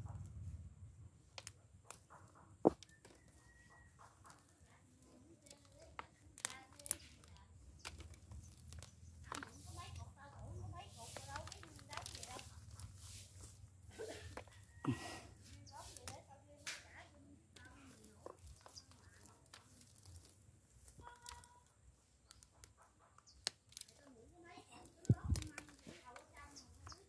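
Hands pulling apart a dry, fibrous arrowroot root mass to get at the tubers. Roots tear and rustle and soil crumbles, with scattered crackles and a couple of sharper knocks.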